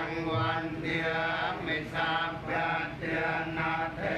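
A group of voices chanting Buddhist prayers together, in a steady run of short phrases.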